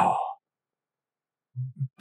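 A man's voice: a drawn-out, breathy trailing end of an exclaimed "wow", then silence, then two short low voice sounds just before he speaks again.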